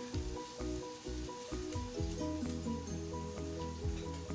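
Soft background music: a simple melody of held notes that change pitch every fraction of a second over low bass notes, with a faint steady hiss underneath.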